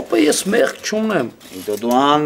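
A man's voice speaking a short phrase with a creaky, rattling quality, then trailing off in a falling tone about a second in.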